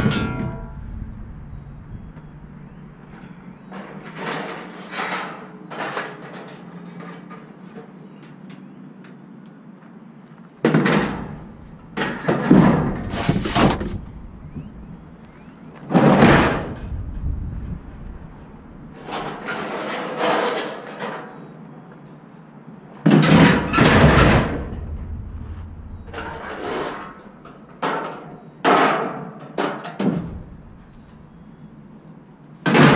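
Scrap metal and junk being handled in a pickup truck bed: a sharp ringing metal clank at the very start, then bursts of knocking, clattering and thuds on and off.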